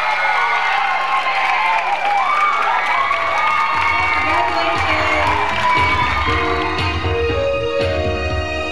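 Crowd cheering and shouting in a school auditorium, with applause. About four seconds in, music with a bass line comes in under the cheering and takes over.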